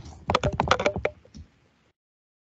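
A quick run of about ten sharp clicks in under a second, from a pen drawing arrows on a tablet or screen, followed by one fainter click.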